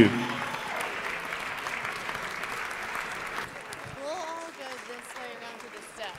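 Audience applauding, the clapping slowly fading toward the end, with a few voices talking over it about four seconds in.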